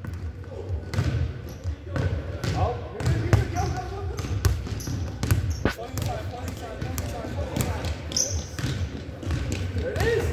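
A basketball dribbled on a hardwood gym floor, a run of bounces at an uneven pace.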